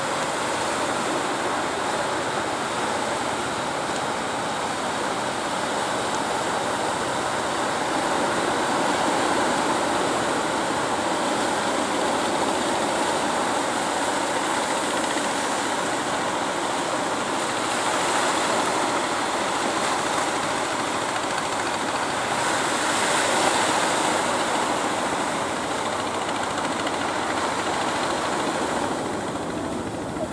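Surf breaking and washing onto the shore: a steady rush of noise that swells a few times.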